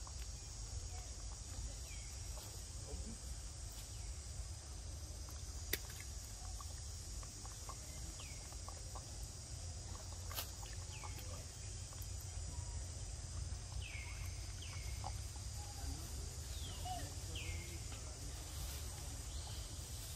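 Outdoor ambience: a steady low rumble and high hiss, with birds giving short falling chirps that come more often in the second half. A couple of sharp clicks stand out, about six and about ten seconds in.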